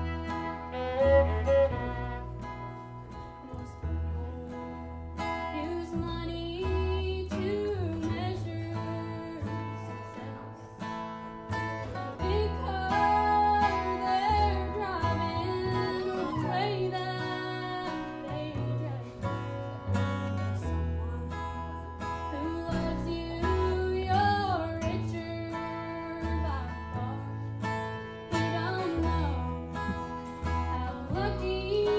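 Live acoustic country song. A fiddle plays at first, then a young woman sings lead over a strummed acoustic guitar and an upright bass.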